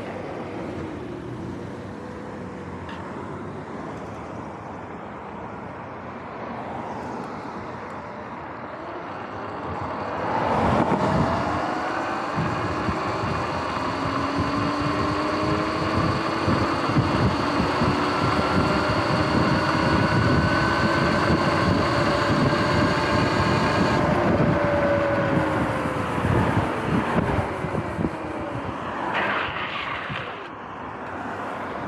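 Sur-Ron X electric dirt bike pulling away: about ten seconds in, its motor whine climbs in pitch with rushing wind and road noise, holds at speed, then falls in pitch as the bike slows near the end.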